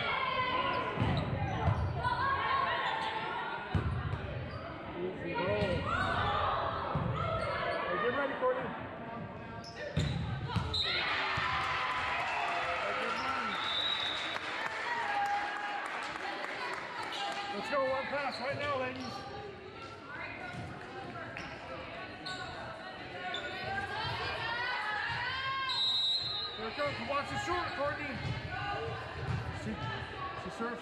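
A volleyball being hit and bouncing on a hardwood gym floor, heard as repeated dull thuds, mixed with the calls and chatter of players and spectators echoing in a large gymnasium.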